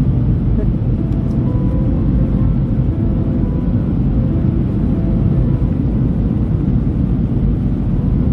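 Steady low rumble of a jet airliner in flight, heard from inside the cabin: engine and airflow noise.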